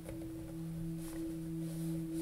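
A steady low drone of two tones an octave apart, holding level throughout, with a couple of faint clicks of tarot cards being handled.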